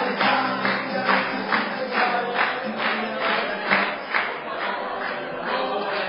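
Live folk song: voices singing together over a steady, quick percussive beat of about two to three strokes a second.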